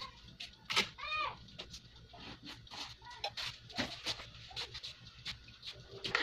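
A single short animal call about a second in, its pitch rising then falling, among frequent small clicks and pops.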